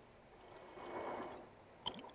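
Faint gurgle of liquid as a glass bottle is drunk from, a soft swell that rises and fades over about a second.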